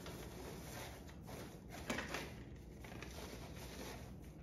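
Faint rustling of shredded paper basket filler as hands push it aside to make room, with a few soft ticks in the middle.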